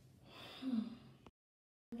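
A person's breathy gasp with a short voiced note that falls in pitch. About halfway through, the sound cuts to dead silence for roughly half a second at an edit.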